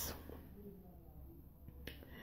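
A pause in speech: quiet room tone with one sharp click near the end.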